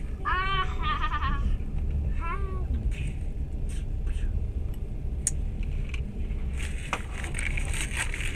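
Steady low rumble of a moving train heard from inside the carriage. Within the first three seconds come two short, high-pitched wavering vocal cries, and there are a few sharp clicks later on.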